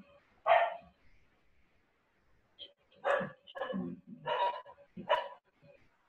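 A dog barking over a video-call line: one bark about half a second in, then a run of four barks a little under a second apart.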